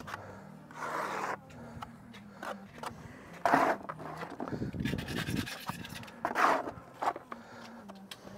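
Trowel scraping tile adhesive onto the back of a cut stone riser, several short scrapes a second or two apart.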